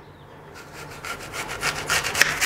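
A kitchen knife sawing crosswise through a whole fresh apple to cut off a round slice. The sound is made of many quick crackles and grows louder as the blade works through the fruit.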